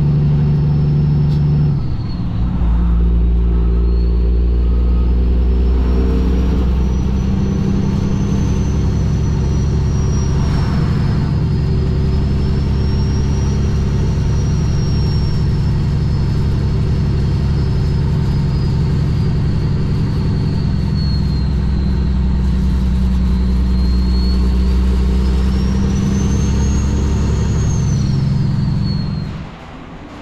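Cummins ISX inline-six diesel of a Kenworth W900L truck running steadily on the highway, heard from the cab, with a brief dip in its drone about two seconds in. A faint high whistle rises and falls slowly above the engine.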